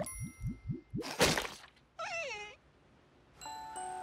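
Cartoon sound effects: a sharp ding, then four quick rising blips, a loud whoosh about a second in, and a short falling pitched squeal. From about three and a half seconds in, a chiming music sting begins.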